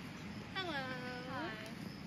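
A high-pitched voice drawing out one long word, its pitch falling, holding, then rising at the end, over steady outdoor background noise.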